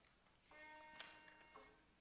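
A faint held chord of several notes, sounding for about a second, gives the choir its starting pitch before it sings.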